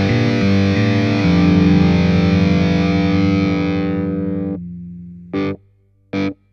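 Distorted electric guitar through an ENGL Powerball II tube amp and a 4x12 cabinet with Celestion Vintage 30 speakers. A couple of chord changes lead into a final held chord that rings out, fades, and is cut off about four and a half seconds in. A short, sharp burst of sound follows near the end.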